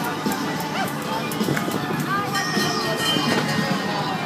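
Fairground music playing over crowd chatter and children's voices.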